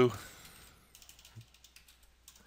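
Faint computer keyboard keystrokes: a few scattered, short clicks as text is typed and corrected.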